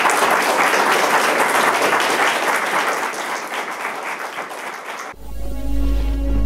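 Audience applause, a dense clatter of many hands clapping that eases a little, cut off suddenly about five seconds in by music that opens on a deep, steady low note.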